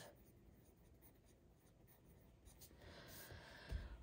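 Pencil writing on a printed paper sheet, a faint scratching that starts about halfway through.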